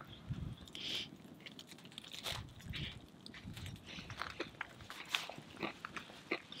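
A person biting into and chewing a slice of pizza with a crispy, partly burnt crust: faint, scattered crunches and mouth sounds.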